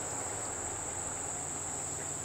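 Steady, high-pitched drone of an insect chorus that runs without a break.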